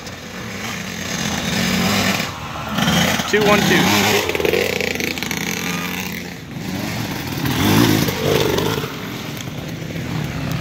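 Dirt bike engine revving up and down as it rides past along a trail, the pitch rising and falling with the throttle, with a louder stretch about three to four seconds in and another about eight seconds in.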